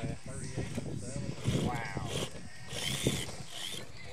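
Electric RC rock crawler's motor and gear drive whining in short bursts as it climbs over rocks, with a couple of brief voice fragments.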